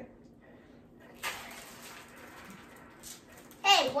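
A soft, even hiss of small candies being poured out of a bag begins suddenly about a second in and lasts about two seconds. Near the end a child's voice comes in loudly.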